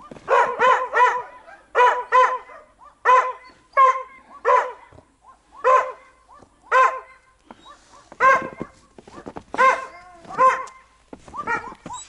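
A dog barking repeatedly: about fourteen short, high-pitched barks, many coming in quick pairs or threes, with short gaps between the groups.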